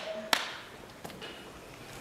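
The last scattered claps of audience applause dying away, with one clear clap about a third of a second in and a faint one about a second in, then the quiet of the hall.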